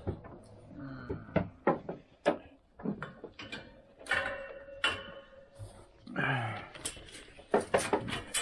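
Wire-mesh cage door and its metal latch rattling and clicking as gloved hands work it, a series of sharp knocks and clinks. A brief voice-like sound comes about six seconds in.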